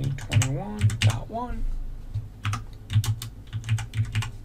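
Typing on a computer keyboard: a run of separate key presses.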